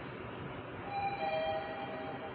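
Mitsubishi elevator's electronic arrival chime, two tones, a higher one then a lower one, sounding about a second in and ringing on: the signal that the car is arriving at its stop. Under it, the steady running noise of the car travelling.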